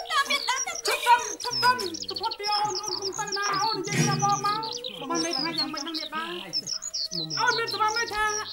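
Birds chirping in a dense, continuous run of short calls, with a voice and a steady held tone underneath.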